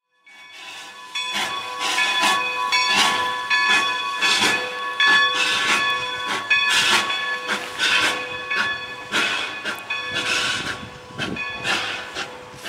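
1910 Baldwin 4-6-0 steam locomotive working slowly, its exhaust chuffing unevenly about once or twice a second over a steady thin tone. The sound fades in during the first second.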